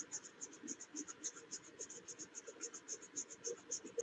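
A small brush scrubbing a liquid-damaged area of a laptop logic board: faint, quick scratchy strokes, about seven a second, as the corrosion around a resistor is cleaned off.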